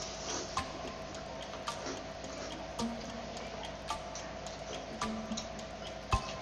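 Metal fork and spoon clinking against a ceramic noodle bowl in sharp, scattered clicks, roughly one a second, as spicy instant noodles are twirled and eaten, over a faint steady hum.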